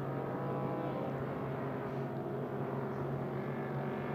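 Engines of several 6-litre-class racing powerboats running steadily, their tones blending into one drone.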